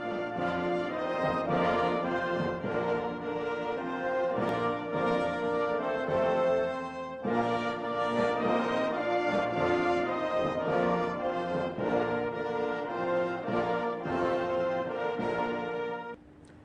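Orchestral theme music with brass, breaking off briefly about seven seconds in before it carries on.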